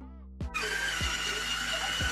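A small electric motor, like a kitchen mixer, starts whirring steadily about half a second in, with a thin high whine. A background music beat runs under it.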